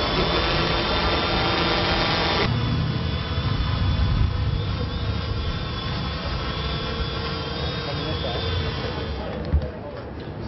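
Small quadcopter drone in flight, its electric motors and propellers giving a steady whine made of several pitched tones. About two and a half seconds in the sound changes abruptly, with more low rumble after it, and the higher tones waver as the motors adjust their speed.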